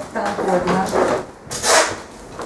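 Low talking, with a short rasping noise about one and a half seconds in.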